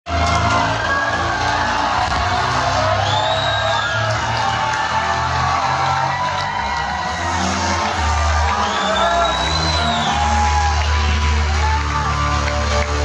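Live rock band playing loud, with distorted electric guitar and sustained bass notes in a large hall, and shouts from the crowd. High gliding notes rise and fall twice.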